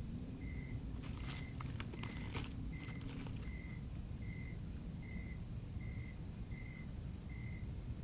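Crackling rustles of dry leaves and debris, heard close up, as a striped skunk moves about the camera from about one second in to about three and a half seconds in. Under it runs a steady low hiss and a short high chirp that repeats a little more than once a second.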